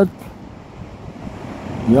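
Steady hiss of surf and wind on the microphone on an open beach. A man's voice comes back in right at the end.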